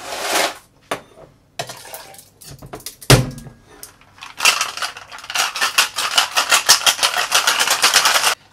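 Ice being shaken hard in a metal tin-on-tin Boston shaker: a fast, even run of rattling strokes, about seven a second, starting about four and a half seconds in. Just before it, a single sharp knock as the two tins are pressed together.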